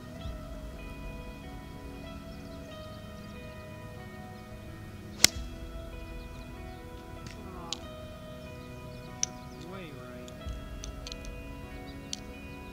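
Steady background music with one sharp, loud click about five seconds in: an 8-iron striking a golf ball off the tee.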